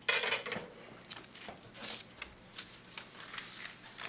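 Handling noise from a roll of labels and its paper liner: a sharp knock at the start, then scattered clicks and papery rustles, with a louder rustle about two seconds in.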